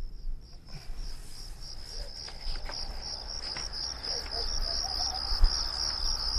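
Crickets chirping in a fast, steady trill that starts about a second in: the comedy 'crickets' sound effect marking an awkward silence.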